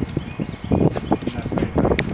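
Wind buffeting the camera's microphone in irregular low rumbling gusts.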